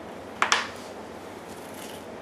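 A metal spoon scraping seeds out of a halved cucumber, with a short double scrape about half a second in.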